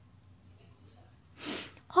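Near silence, then about one and a half seconds in a short, sharp breathy sound from a person just before speech begins.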